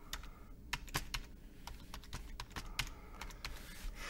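Typing on a computer keyboard: a quick, irregular run of key clicks as an IP address is entered.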